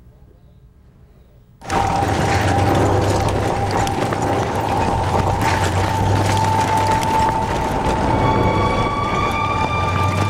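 After a short near-silence, a steady mechanical rumble with clattering sets in, with a sustained tone running over it: tank engines and tracks on a dramatised film soundtrack.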